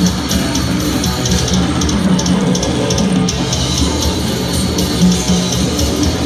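Death metal band playing live and loud: heavily distorted electric guitars and bass over a drum kit, with cymbal strokes repeating at an even pace.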